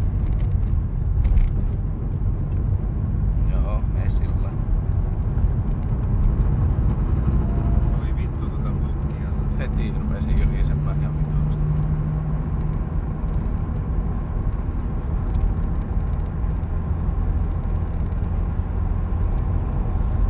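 Turbocharged BMW M50 straight-six running at low revs in a high gear, heard inside the car's cabin as a steady drone with road noise. Its note holds a little higher in the middle of the stretch.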